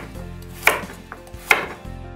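Chef's knife chopping carrots on a bamboo cutting board: two sharp chops, under a second apart.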